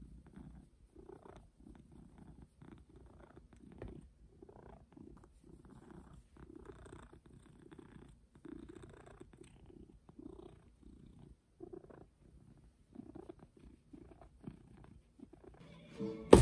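A long-haired domestic cat purring softly and steadily, the purr swelling and fading with each breath, while it is scratched under the chin: a contented cat.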